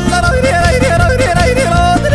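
Music with a yodeling voice, the voice leaping quickly between low and high notes over a steady accompaniment.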